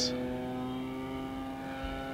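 E-flite Commander RC plane's electric motor and propeller in flight, a steady whine holding one pitch. The pilot suspects the propeller is imbalanced or chipped.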